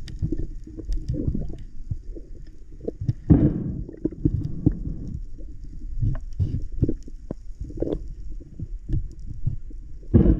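Muffled underwater knocks and thumps, recorded through a camera's waterproof housing, as a spearfisher handles a speared fish and the spear line, with a louder rush of water noise about three seconds in.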